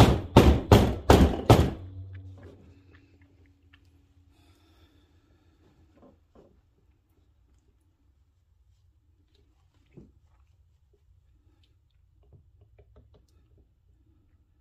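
A filled wooden loaf soap mold banged down on the countertop about six times in quick succession in the first two seconds, loud thunks that settle the freshly poured cold process soap batter. After that there is only faint scraping of a spatula smoothing the soap top.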